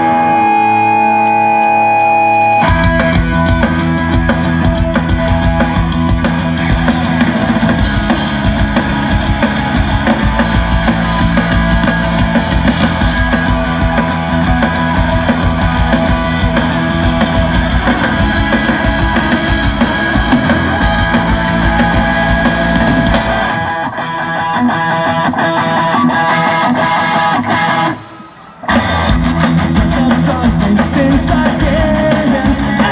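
A rock band playing live: an electric guitar plays alone for the first couple of seconds, then drums and bass come in with the guitars at full volume. Near the end the low end drops away, and the band stops for about half a second before crashing back in.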